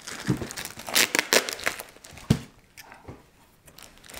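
Plastic wrapping crinkling in irregular rustles as a boxed album is pulled out and handled, with one short thump a little over two seconds in. Quieter in the last second and a half.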